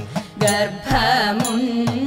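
Thiruvathirakali (Kaikottikali) song sung to a steady accompaniment, with crisp hand claps about twice a second keeping the beat.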